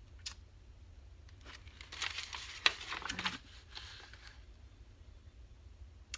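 Paper rustling and crinkling as a sheet of old magazine paper is pulled from a stack and laid down, in a few bursts between about two and four and a half seconds in, with one sharp tap in the middle.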